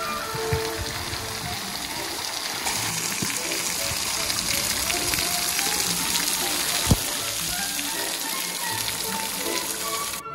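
Water spraying from a play fountain and falling as a shower of droplets, a steady hiss and splatter, with a single sharp click about seven seconds in.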